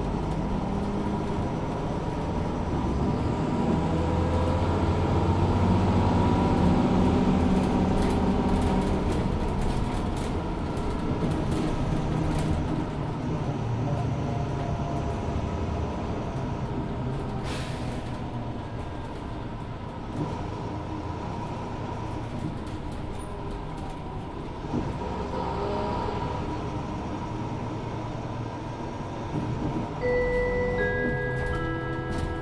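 Mercedes-Benz Citaro 2 LE city bus under way, its Daimler OM 936 h six-cylinder diesel and ZF Ecolife six-speed automatic working. The engine rises in pitch and loudness over the first several seconds as the bus accelerates, then eases back and runs lower and quieter. There is a short hiss about halfway through.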